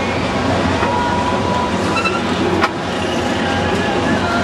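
Steady rushing noise of wind buffeting the microphone while riding a high fairground ride, with faint fairground sounds and thin squeals from below or from the ride. A single sharp click about two and a half seconds in.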